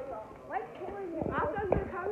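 Children's voices calling and chattering, with a few low thumps a little over a second in.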